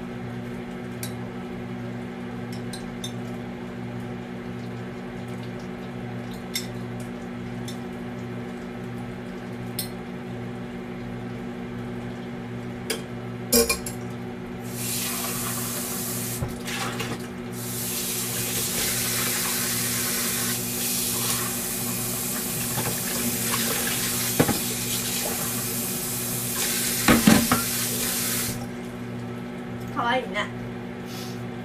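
A few light clicks, then a tap runs into a sink for about fourteen seconds from around the middle, with knocks and clinks of a cup and spoon being rinsed, over a steady low hum.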